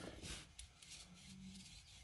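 Faint rubbing and light scratchy ticks of hands handling a titanium folding knife, moving the blade to work a freshly applied drop of oil into the pivot.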